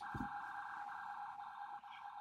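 A faint, steady electronic tone held throughout, a high hum with several overtones, with one brief low thump just after the start.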